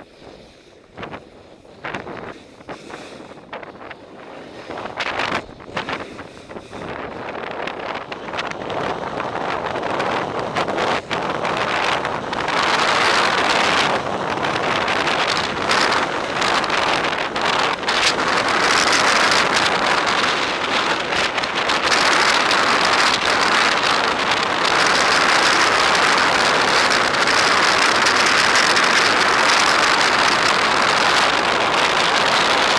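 A snowboard sliding and scraping over packed snow, with wind rushing past the camera. It starts with scattered short scrapes, then grows into a loud, steady rush from about a third of the way in as speed builds.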